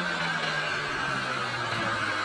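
Honda Prelude's H22 2.2-litre four-cylinder engine running, its note falling steadily in pitch, over a loud haze of outdoor noise.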